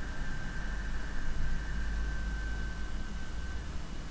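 Steady background noise from the recording: hiss and a low hum, with a thin high whine that fades out near the end.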